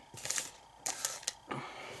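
A few short rustles and taps as small paper and foil packets are handled and slid across a wooden tabletop.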